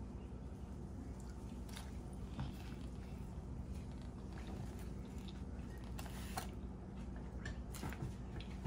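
Faint eating sounds: chewing, with a few soft clicks and taps as a taco is handled over a plastic takeout container. Under them runs a steady low hum.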